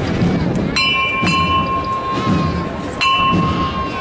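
The small hand-struck bell on a Málaga Holy Week processional throne rung three times, twice in quick succession and once more near the end, each strike ringing on; it is the signal to the throne's bearers. A crowd murmurs underneath.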